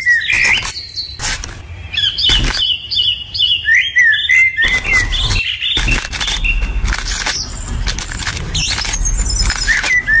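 Small birds chirping repeatedly, with short sharp cracks and crunches as a knife scores a pomegranate's rind and hands pry the fruit apart.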